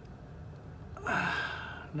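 A man's long, breathy sigh, starting about halfway through and lasting about a second: a sigh of dismay at the thought of fasting.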